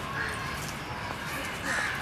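A crow cawing twice outdoors, a short call early on and a louder one near the end, over steady background noise.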